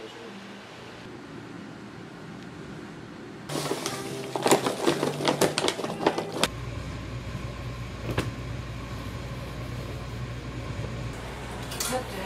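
White crystals poured from a plastic bag into a glass jar, a dense run of rattling clicks and bag crinkling for about three seconds, starting a few seconds in. After it comes a steady low hum.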